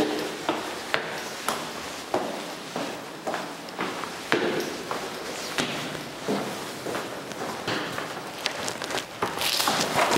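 Footsteps of a person climbing a stairway and walking on through empty rooms, a steady tread of about two steps a second.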